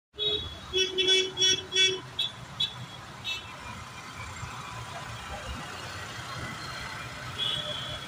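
Vehicle horns honking in stalled traffic: a run of about five short beeps in the first two seconds, then a few shorter, higher toots. After that comes a steady hum of idling traffic on a wet road.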